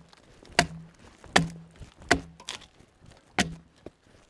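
Axe chopping mud-covered bark off a Douglas fir log: four sharp strikes a bit under a second apart, each with a brief low ring.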